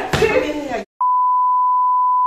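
A TV-style censor bleep: a single steady pure tone that cuts in about halfway after a brief dead silence, replacing speech, following a few moments of voices.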